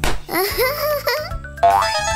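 Cartoon sound effects over children's background music: a sharp hit right at the start as a toy hammer strikes a metal frame, a baby's wordless vocalizing, then a rising springy boing near the end.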